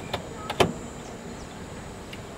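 Sharp knocks of a cricket ball arriving at the batter's end of the pitch. There are three quick clicks, and the loudest comes just over half a second in.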